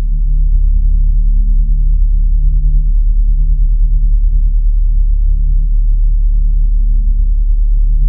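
Ambient drone music: deep, steady held low tones that pulse slightly in loudness.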